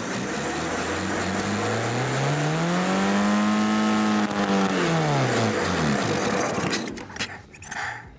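Cold-soaked car engine, frozen at minus thirty degrees, revving slowly up and back down once over about five seconds. Its note drops away about six seconds in and the sound falters near the end.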